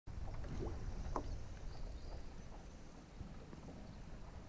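Paddleboard paddling on calm lake water: a few short drips and small plops of water, over a low rumble of wind on the microphone that eases after the first second or so.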